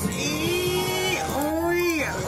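A song with a singer holding two long, gently arching notes, one after the other.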